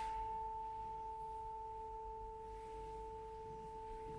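Two steady pure tones, one high and one about an octave lower, ringing on together and slowly fading, in a live experimental performance with koto and modular synthesizer.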